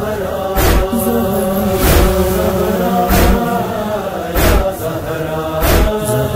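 Backing chorus of a Shia noha between verses: voices chanting a sustained, slowly moving drone, with a deep thump about every one and a quarter seconds keeping a slow beat.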